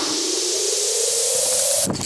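A rising whoosh sound effect: a hiss of noise with a tone sliding steadily upward, cutting off suddenly near the end.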